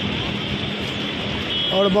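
Steady road traffic noise, an even wash of sound with no single vehicle standing out.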